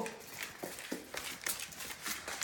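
Great Danes' paws stomping and clicking on a hard tile floor: a string of short, separate knocks about a quarter second apart.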